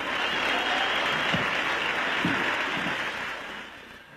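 Audience applauding, a steady dense clatter of clapping with a couple of brief voices rising above it, fading out near the end.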